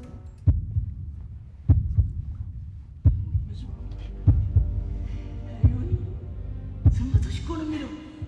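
Slow, deep heartbeat thuds, one about every 1.2 seconds, some with a softer second beat, over a low hum: a dramatic heartbeat sound effect in a film soundtrack. A voice comes in faintly near the end.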